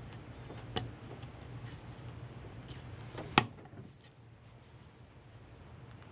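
Small hard-plastic clicks as the battery cover and body of a keychain LED micro-light are handled and pressed together, with one sharper snap about three and a half seconds in, over a faint steady hum.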